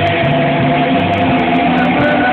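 Live rock band playing loud: electric guitars and bass over drums, with held guitar notes ringing steadily through.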